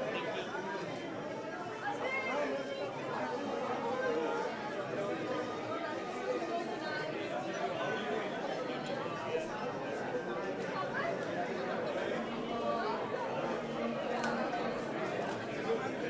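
Crowd chatter: many people talking at once, overlapping conversations at a steady level with no single voice standing out.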